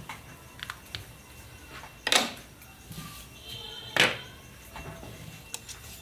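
Hands handling small items on a workbench mat: a marker pen, a small circuit board and a sheet of paper. There are light clicks and taps, and two louder short knocks, one about two seconds in and one about four seconds in.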